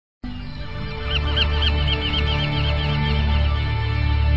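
Low sustained music drone with held tones, and a bird calling a rapid string of repeated chirps that starts about a second in and fades over the next two seconds.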